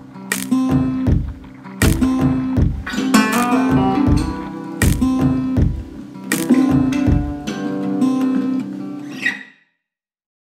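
Background music of strummed acoustic guitar chords over a bass line, with chord strokes about every second. It cuts off near the end.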